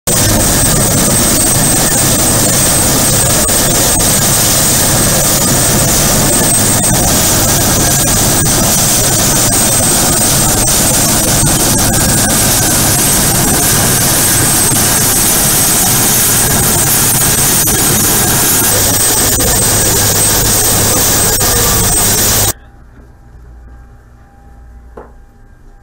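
Military helicopter on a ship's flight deck running with its rotor turning: a loud, steady turbine-and-rotor noise with a high turbine whine over it. It cuts off suddenly about 22 seconds in.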